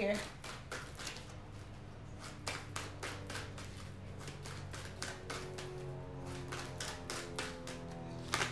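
A deck of tarot cards being shuffled by hand, a run of soft card clicks and slaps a few times a second. Quiet background music with held notes runs underneath.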